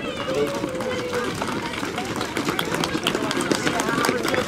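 Footsteps of a large group of runners on brick pavement at the start of a race: many quick, overlapping steps that grow denser from about halfway through as the pack nears. Voices are heard, mostly in the first second.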